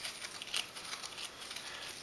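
A flat stick stirring wet sediment and water in a plastic cup: faint scraping and swishing, with a small knock about half a second in.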